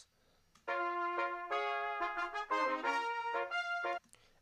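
Cornet section of a brass band playing a short passage in harmony, several cornets sounding together with the notes changing every half second or so. It starts about half a second in and cuts off suddenly just before the end, as the soloed cornet tracks of a multitrack recording are played and then stopped.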